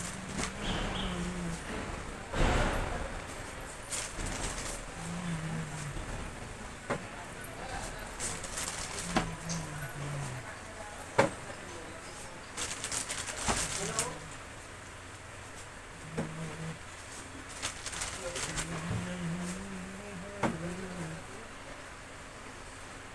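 Plastic snack packets rustling and crinkling as they are handled, with scattered sharp knocks and clicks of goods being set on shop shelves. The loudest crinkling comes in short bursts, a couple of seconds in and again around the middle.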